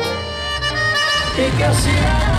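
Latin band music: a held chord of sustained reed or wind notes, with the low bass line coming back in near the end.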